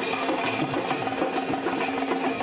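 Dhak drums played in a fast, dense, unbroken roll.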